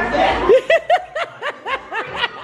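A person laughing in a rhythmic run of short 'ha' pulses, about five a second, starting about half a second in after a moment of chatter.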